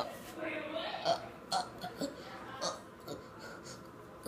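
A faint, low vocal sound in the first second, then a few soft clicks.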